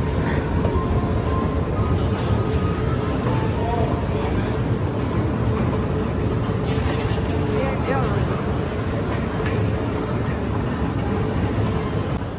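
A moving walkway running, with a steady mechanical rumble and rattle and a faint steady hum, and voices murmuring faintly.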